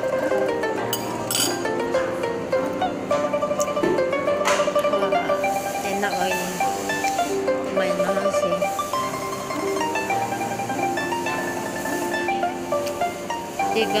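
Background music with a melody of steady notes moving in steps.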